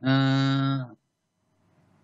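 A man's drawn-out hesitation filler, 'eeh', held on one steady pitch for about a second.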